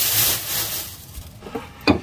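Kitchen work sounds: a loud hiss that fades out within the first half second, then a single sharp knock near the end, as of a utensil or dish set down.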